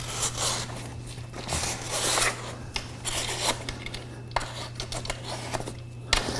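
A road-bike tyre bead being worked off the rim by hand, rubber scraping and rubbing against the rim in short, irregular bursts. The tyre is a stiff one, hard to get off.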